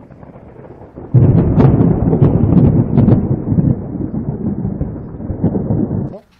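Thunder: a faint rumble, then a sudden loud clap about a second in, followed by a heavy low rumble with several sharp cracks that cuts off abruptly at the end.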